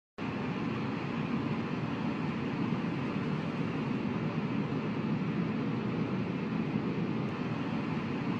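Steady low rushing noise with no tune or rhythm, a sound effect laid under an animated logo intro.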